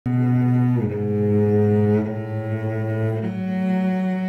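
Slow opening music of low bowed strings: long held notes that change pitch every second or so.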